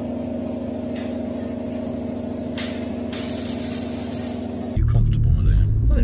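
A steady pitched hum holds unchanged for nearly five seconds, then cuts off suddenly. It gives way to the louder low rumble of a car on the move, heard from inside the cabin.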